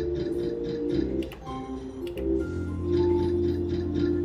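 Novoline slot machine playing its free-game music, a looping melodic jingle over the reels' rapid ticking, about four ticks a second, as one free spin runs into the next.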